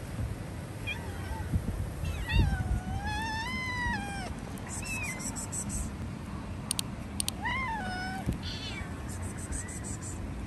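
Stray cat meowing several times: short calls around the first second, a long call of about two seconds that rises and falls in pitch, and another call near the eighth second.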